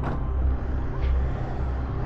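Passenger van engine running as the van pulls away, a steady low rumble.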